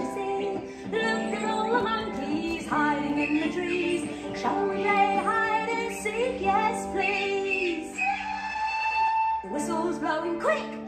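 Recorded children's song playing: a woman singing a melody over instrumental accompaniment, holding one long note near the end.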